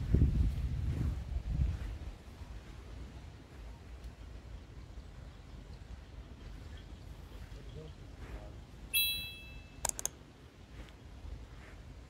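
Quiet outdoor ambience with a low rumble in the first two seconds. About nine seconds in there is a brief high-pitched chirp made of a few steady tones, and a sharp click comes about a second later.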